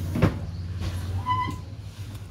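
Steady low background hum of a noisy shop, with a sharp knock a quarter-second in and a brief high tone about halfway through.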